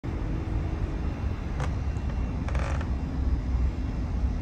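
Outdoor evening background: a steady low rumble, with a faint sharp click about one and a half seconds in and a brief rustle a little after two and a half seconds.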